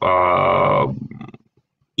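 A man's voice holding one long, steady hesitation vowel, a drawn-out "a-a", for about a second. It fades out to dead silence before speech resumes, as a call's noise gate cuts in.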